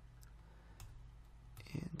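A few faint computer mouse clicks over a low steady hum, then a man's voice starts near the end.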